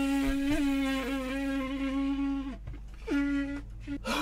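A 3D-printed PLA bugle horn blown as a test: one long steady note that slides down and breaks off about two and a half seconds in, then a second short blast at the same pitch about half a second later. The horn works, sounding a single rich, steady note.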